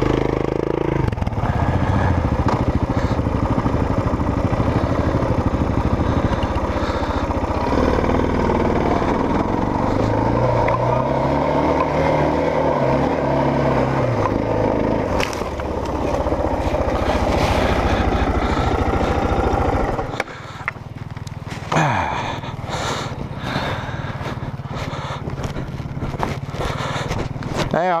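Single-cylinder dual-sport motorcycle engine pulling up a rocky climb, the revs rising and falling, with gravel and stones clattering under the tyres. About twenty seconds in, the engine sound drops away sharply, leaving scrapes and clatter at a lower level.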